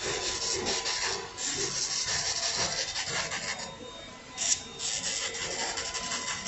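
Electric nail drill with a sanding-band bit grinding down artificial nails for a fill: a steady scratchy rasp with a faint motor whine beneath it. It eases off briefly near four seconds in, then gives one short, louder scrape and carries on.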